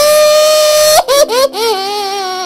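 A cartoon girl's voice-acted crying: a long, loud, high wail held for about a second, then choppy sobs and a lower wavering cry near the end.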